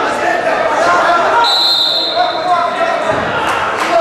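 Voices shouting in a reverberant sports hall during a freestyle wrestling bout, with a short steady high whistle about a second and a half in and a few sharp thuds of bodies on the wrestling mat near the end.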